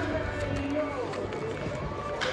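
Indistinct voices and music carrying across an open-air baseball stadium, with footsteps on a concrete walkway.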